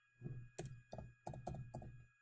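Computer keyboard being typed on: a quick, uneven run of about seven keystrokes as a short ticker symbol is entered.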